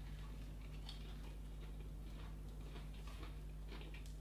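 Faint chewing of a breaded fried-chicken burger: small scattered clicks and crunches from the mouth, over a steady low electrical hum.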